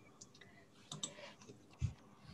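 Faint clicking at a computer: a few quick clicks about a second in, then a dull thump near the end.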